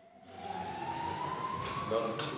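A single whistle-like tone sliding slowly upward in pitch, over faint room murmur.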